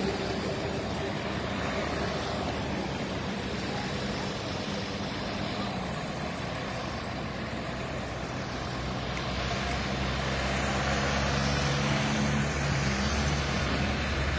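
Steady road noise of a convoy of pickup trucks, SUVs and cars driving past on a highway, with a low engine hum, growing a little louder in the second half.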